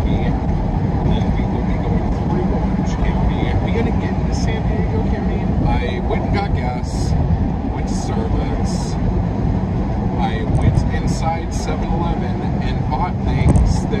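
Steady road and engine rumble heard inside a car's cabin at freeway speed, with a man's voice talking over it.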